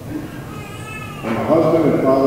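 A short, high-pitched, meow-like cry in a young child's range, about half a second in and lasting under a second, during a pause in a man's speech over a PA microphone.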